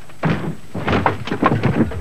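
A car rolling over: a quick series of heavy thuds and crunches as the body strikes the ground.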